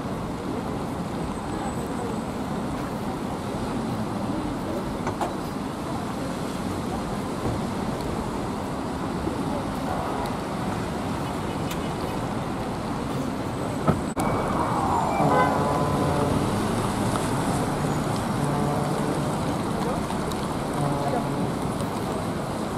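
Steady city road traffic: buses and cars passing on a wet road. There is a sharp click about two-thirds of the way through, after which the traffic is a little louder, with a short falling tone.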